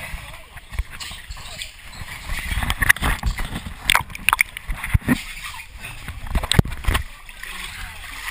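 Muddy water splashing and sloshing, with irregular knocks and scrapes, as a person crawls through a partly flooded corrugated pipe.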